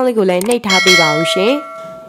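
Notification-bell sound effect of a subscribe-button animation: a single bell chime that strikes just under a second in and rings on with a steady tone, fading out near the end.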